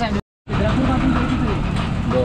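An engine running with a steady low rumble and faint voices behind it, broken by a brief cut to silence just after the start.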